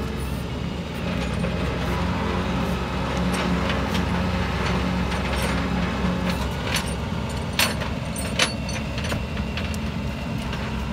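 Tow truck engine idling steadily with a low hum, with scattered small clicks and two sharp knocks in the second half as the car on its bed is handled.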